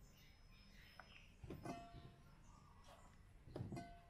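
Faint swishing of a hand stirring pomegranate arils in water in a stainless steel bowl, with two soft sloshes about a second and a half in and near the end.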